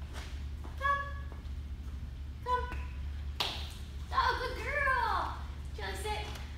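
A woman's high-pitched voice giving a few short calls to a dog, then one longer drawn-out call that rises and falls, with a single tap about three and a half seconds in and a steady low hum underneath.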